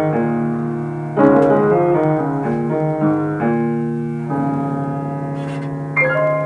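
Solo jazz piano improvisation on an acoustic grand piano: melodic chord phrases with a strongly struck chord about a second in, then a long held chord left ringing from past the fourth second, and a fresh chord struck at the very end.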